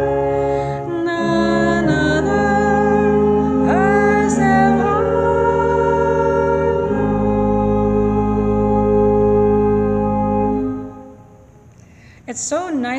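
A pipe organ accompanies a hymn sung by a few voices. It closes on a long held chord with a deep bass that dies away near the end. The organ's pipes have recently been taken down and cleaned, and it sounds so much better.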